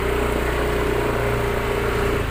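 A small engine running steadily at an even pitch: a constant low hum with a steady higher drone over it.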